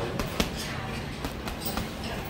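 Boxing gloves striking a hanging heavy bag: a few separate punches, the loudest about half a second in.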